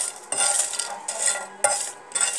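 A utensil scraping and stirring dried red chillies in a dry iron pan: repeated short scraping strokes, a few a second, with the dry chillies rustling against the metal as they roast.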